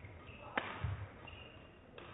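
Badminton racket striking the shuttlecock with a sharp crack about half a second in, followed by low thuds of a player's feet landing on the court floor, echoing in a large sports hall.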